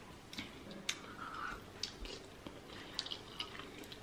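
Faint eating sounds from spaghetti in a creamy sauce being chewed, with a few scattered small wet mouth clicks.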